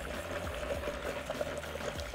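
Faint swishing of cleaning liquid in a StylPro brush cleaner's glass bowl as a makeup brush is held down in it, over a faint steady hum.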